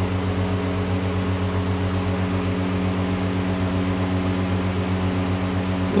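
Steady low machine hum with several even overtones over a faint hiss.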